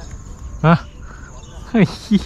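Insects trilling steadily at a high pitch, broken by a short voiced "ha" about half a second in and another brief vocal sound near the end, which are the loudest sounds.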